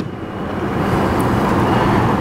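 Steady noise of road traffic, building over about the first second and then holding.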